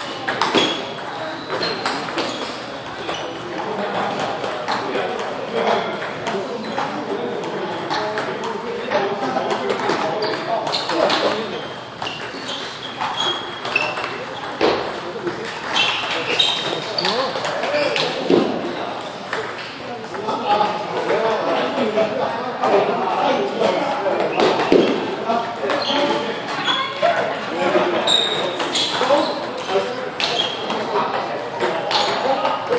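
A table tennis rally: the ball clicking off the paddles and bouncing on the table in a quick run of sharp ticks, repeated through several points. Voices talk in the background.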